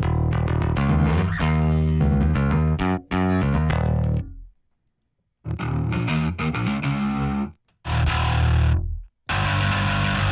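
Sampled electric bass from Native Instruments' Session Bassist: Prime Bass, played from a keyboard through its high-gain distortion setting. Quick runs of notes stop for about a second near the middle, then two short phrases follow, and a dense held sound comes near the end. The pitch of the notes stays clear through the distortion.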